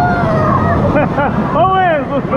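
Churning wave-river water rushing around a camera at water level, with children's voices calling out over it in short rising-and-falling cries and one longer held cry near the end.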